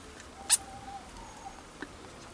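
A single sharp click about half a second in, followed by a faint, thin squeak lasting about a second, and a small tick near the end.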